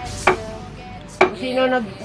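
Hammer and chisel striking the cement of a concrete tomb niche as it is broken open: two sharp strikes about a second apart.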